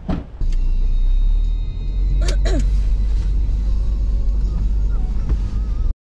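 A single thump, then a car's steady, loud low rumble that cuts off abruptly near the end.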